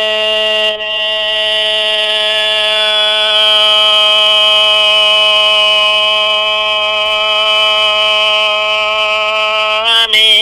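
A singer holds one long, steady sung note in the opening of a Hmong kwv txhiaj, with a slight waver and a brief dip about a second in.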